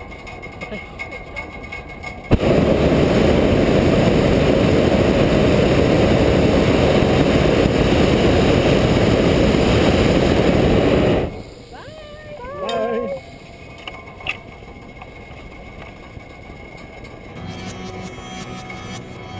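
Hot air balloon's propane burner firing in one long blast of about nine seconds: a loud, steady roar that starts suddenly a couple of seconds in and cuts off abruptly, heating the envelope as the balloon lifts off. A brief call from a person's voice follows soon after.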